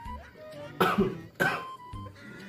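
A man gives two short bursts of stifled laughter, a little over half a second apart, over steady background music.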